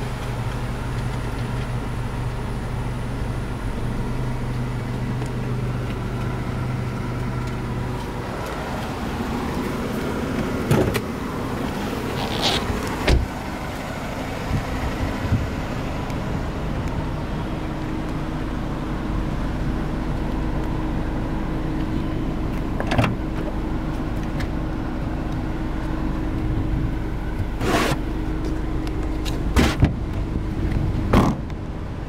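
Mercedes-Benz C180 Kompressor idling steadily, with a handful of sharp clunks from its doors and boot lid being worked.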